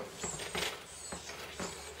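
Faint light clicks and scraping of a piston ring being handled in its groove on a Wiseco piston.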